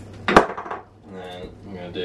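One sharp knock on a wooden chopping board about a third of a second in, as a kitchen item is set down or struck on it, followed by quiet voices.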